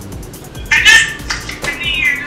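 Two short, high-pitched whining cries, the second starting about a second after the first, over background music.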